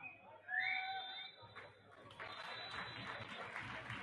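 Field sound from a football match: a short high shout about half a second in, then a steady haze of crowd noise with faint clapping.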